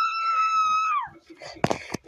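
A woman's high-pitched scream: one long held note that falls away about a second in. Several sharp clicks follow near the end.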